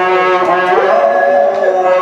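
A man reciting the Quran in melodic tajweed style into a microphone, holding one long ornamented note whose pitch rises about halfway through.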